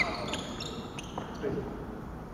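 Badminton court sounds in a reverberant sports hall: a sharp knock right at the start, then faint scattered knocks and voices in the background.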